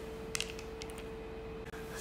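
A few faint light clicks of plastic ball-and-stick molecular model pieces being handled, over a steady faint hum.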